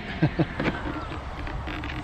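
A man's brief laugh, followed by faint low background noise.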